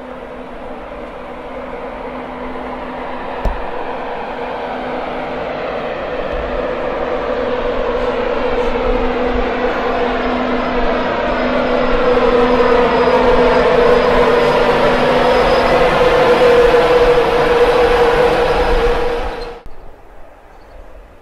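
Class 91 electric locomotive and its InterCity 225 coaches approaching on the East Coast Main Line, the running noise with a steady electric hum growing steadily louder as the train nears, then cutting off abruptly near the end.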